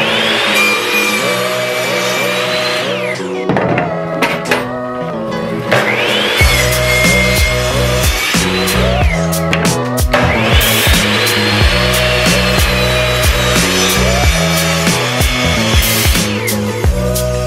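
Electric sliding compound miter saw cutting wood boards three times: each time the motor spins up to a high whine, runs through the cut and winds down. Background music with a steady beat plays under it.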